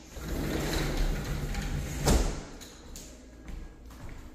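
Sliding glass door rolled along its track for about two seconds, then shut with a single sharp thump.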